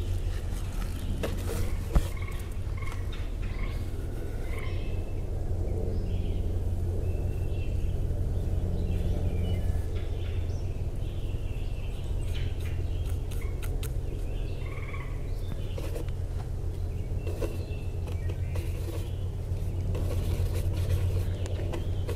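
Woodland ambience: scattered short bird calls over a steady low rumble, with one brief click about two seconds in.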